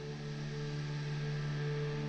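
Ambient sound-healing drone music: a few low sustained tones held steady over a soft hiss, swelling slightly.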